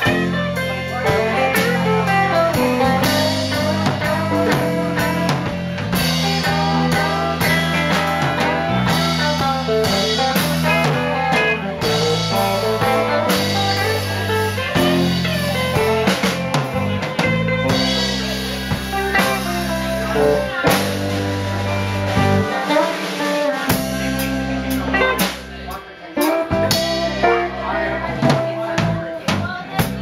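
Live band playing an instrumental break with no singing: two electric guitars over a drum kit, with sustained low notes underneath. The playing drops back briefly about 25 seconds in, then picks up again.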